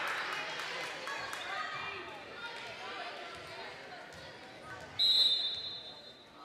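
Gym crowd chatter and cheering dying down after a point, then about five seconds in a referee's whistle blows one steady shrill note for about a second, the signal to serve.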